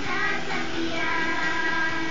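A child singing held notes over backing music, played through a television speaker.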